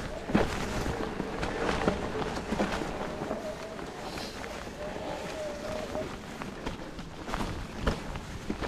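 Specialized Turbo Levo electric mountain bike ridden over a leaf-covered dirt and rock trail: a faint motor whine that steps up in pitch about three seconds in, under steady rattling and knocking from the tyres and bike over rocks and roots.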